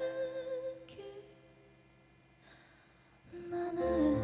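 A woman singing a slow ballad softly into a microphone: a held note with a bending pitch that fades out about a second and a half in. A near-quiet pause follows, then she sings a soft phrase again near the end as the piano accompaniment comes back in.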